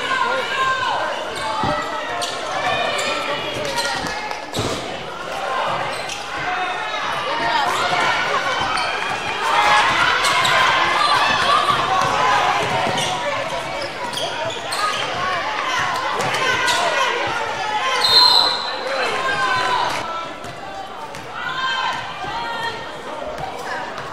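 Basketball being dribbled on a hardwood gym floor, the bounces heard as short knocks, under continuous shouting and chatter from players and spectators in a large indoor gym.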